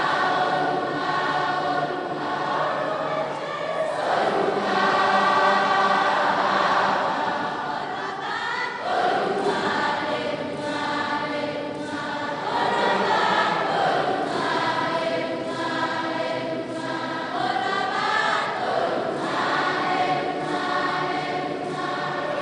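A large group of voices singing a sacred song together in long, sustained phrases.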